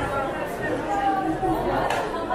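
Indistinct chatter of several shoppers and stallholders talking at once in an indoor market hall.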